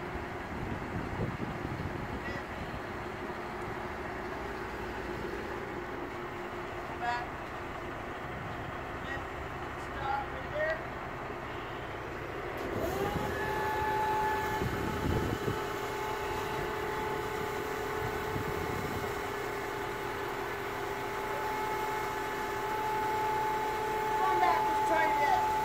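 A truck engine idling, then, about halfway through, an electric hydraulic pump starts with a rising whine and runs on as a steady whine while the car-hauler trailer's upper deck is tilted down into an unloading ramp.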